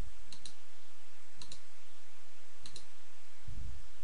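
Computer mouse button clicked three times, about a second apart, each click a quick press-and-release pair, with dull low thumps alongside over a steady low hum.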